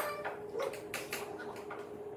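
Quiet room sound of children eating at a table: a few faint clinks of spoons against bowls and soft murmurs, over a steady hum.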